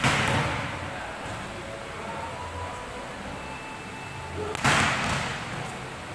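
Volleyball struck hard twice, about four and a half seconds apart: each a sharp smack that rings on in the echo of a large hall.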